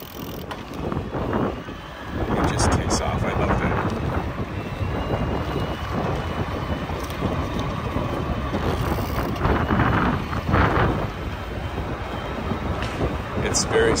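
Wind buffeting the microphone and road rumble while riding an electric gravel bike on pavement, with a few faint clicks. The bike's motor is quiet enough not to be heard.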